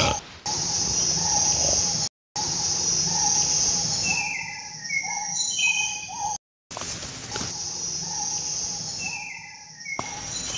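Jungle ambience sound effect: a steady high insect drone with bird calls, a run of short falling notes that comes back about every five seconds. The sound cuts out completely twice, briefly.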